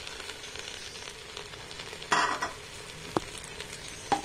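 Rice and masala frying in a pot with a faint, steady sizzle. A brief louder rustling burst comes about two seconds in, and a small click follows about a second later.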